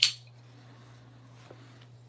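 Quiet handling: a steady low hum underneath and one faint click about one and a half seconds in, as a folding knife is picked up off a rubber work mat.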